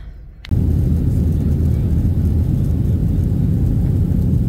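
Jet airliner cabin noise shortly after takeoff: a loud, steady low rumble of engines and airflow that starts suddenly about half a second in.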